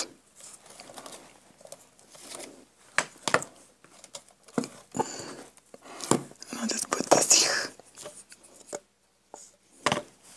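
Handling noises from a cardboard ring binder and paper on a table: scattered taps and knocks with a few short rustling scrapes, the longest rustle about seven seconds in.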